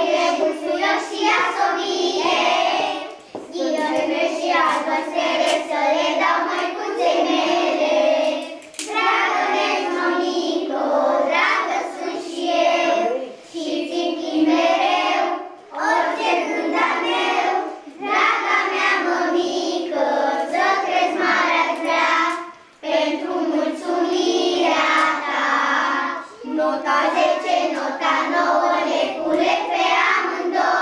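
A group of young children singing a song together, in phrases of a few seconds each with short breaks for breath between them.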